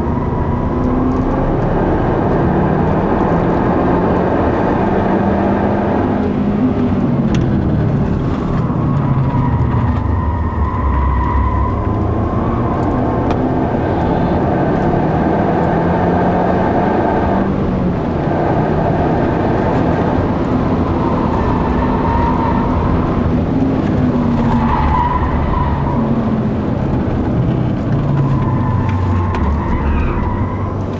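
Mazda 3 MPS's turbocharged 2.3-litre four-cylinder heard from inside the cabin under hard track driving, its revs repeatedly climbing and dropping through gear changes. High-pitched tyre squeal wavers over it through the corners.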